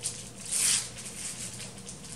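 Paper wrapping rustling as a bar of soap is unwrapped, with one short crinkle about half a second in.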